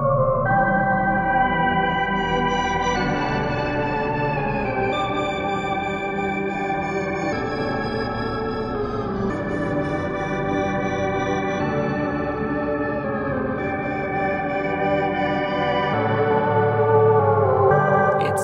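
Steinberg X-Stream spectral synthesizer ('Think Backwards' preset) played legato on a keyboard: a sustained, organ-like synth sound. Its timbre keeps changing and morphing, and the held chords move to new pitches every two seconds or so.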